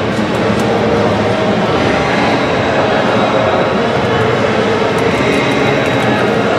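A loud, steady mechanical drone with a faint hum, like a motor or fan running, unchanging throughout.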